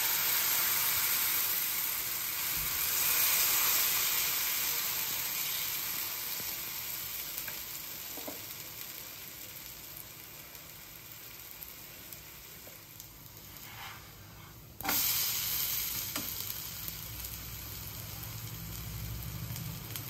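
Eggless vegetable-omelette batter sizzling in oil in a hot nonstick frying pan. It is loudest as the batter is ladled in and eases off over the next several seconds. It turns abruptly louder again about fifteen seconds in, then settles.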